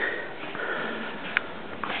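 A man sniffing, with a faint breathy hiss and a single small click about one and a half seconds in.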